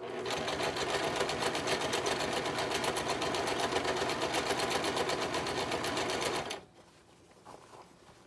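Simplicity domestic sewing machine running at speed, stitching through layered fabric with a fast, even needle rhythm. It stops about six and a half seconds in.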